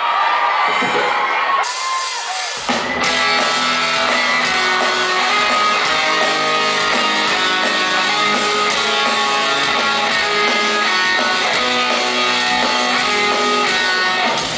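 Live rock band, electric guitars, bass and drum kit, starting a song. The first couple of seconds are thinner, then the full band comes in about two and a half seconds in and plays on at full volume.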